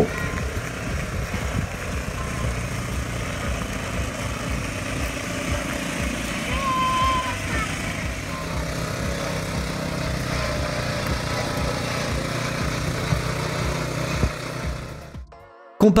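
Small Honda 83 cc petrol engine of a child-size Porsche 911 Junior running steadily as the car is driven, fading out near the end.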